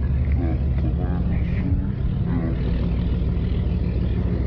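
A steady low rumble with faint, indistinct speech over it.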